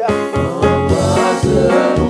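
A French hymn sung by a man's voice over instrumental accompaniment with a steady beat.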